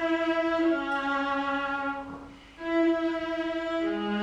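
Viola played with the bow in slow, long-held notes; one note fades out about two seconds in, and the next begins about half a second later.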